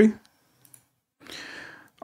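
A faint click, then a short breath drawn in close to the microphone, a soft hiss lasting under a second, just before speech resumes.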